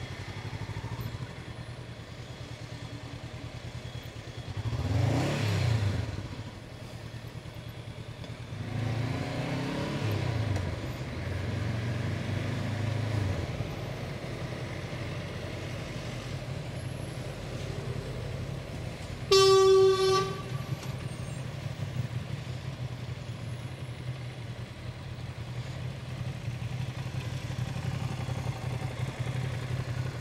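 Honda CB500F parallel-twin engine running in city traffic, revving up and back down about five seconds in and again for a few seconds around ten seconds in. About two-thirds of the way through, a vehicle horn sounds once for about a second.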